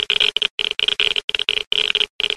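Digital glitch sound effect: a harsh, static-like buzz that stutters, cutting in and out sharply every half second or so.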